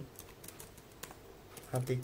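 Computer keyboard being typed on in a few light, scattered key clicks, then a brief spoken word near the end.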